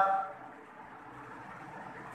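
A man's spoken word trailing off at the very start, then a pause filled only with faint, steady room noise.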